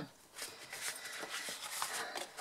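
A sheet of scored cardstock rustling and crackling as hands lift it and bend it along its score lines, a run of soft crackles starting about half a second in.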